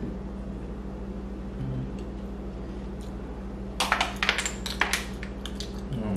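Sharp clicks and clatter of apple snail shells and toothpicks against plates and bowls as the snails are picked out, bunched about two-thirds of the way through, with a few more near the end. A steady low hum sits underneath.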